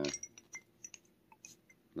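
A few faint, scattered clicks and light clinks of a glass perfume bottle being handled. They follow the end of a brief spoken 'uh'.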